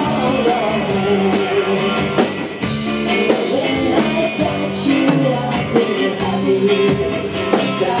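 Live rock band playing: a woman singing lead over electric guitar, bass guitar and drum kit, with cymbal strikes keeping a steady beat.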